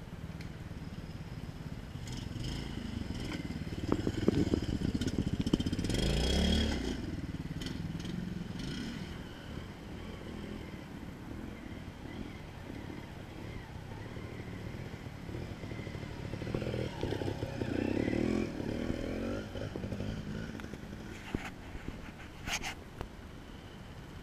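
Trials motorcycle engine idling and revving in short throttle bursts. The loudest bursts come about four to seven seconds in, where the revs fall away at the end, and again around seventeen to nineteen seconds in. There is a sharp tick near the end.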